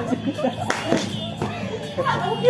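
Three sharp hand claps in the middle, among young women's voices.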